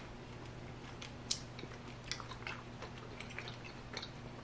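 Quiet chewing of soft sour rainbow gummy candy strips: faint, scattered wet mouth clicks, the sharpest about a second in.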